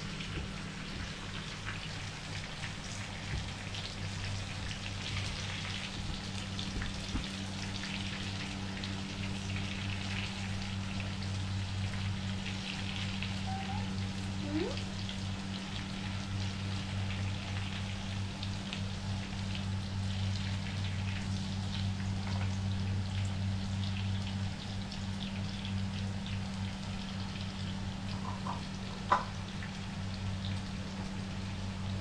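Battered food frying in hot oil in a pan: a steady crackling sizzle over a steady low hum. A single sharp click comes near the end.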